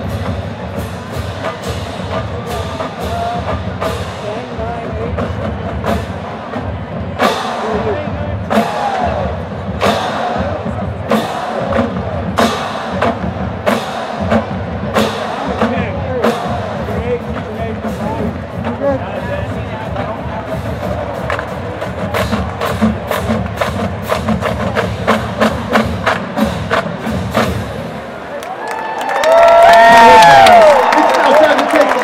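Marching band drumline playing a cadence: sharp stick clicks and rimshots over bass drums in a fast, steady rhythm. About a second before the end the crowd grows loud with cheering and yelling.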